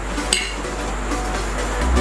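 Two drinking glasses clinked together once in a toast: a short, ringing clink about a third of a second in, over steady background music.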